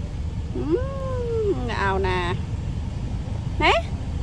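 Siberian husky vocalizing. One long whining call rises and then falls about half a second in, followed by a shorter wavering call and a brief rising call near the end. A steady low hum from the car's idling engine runs underneath.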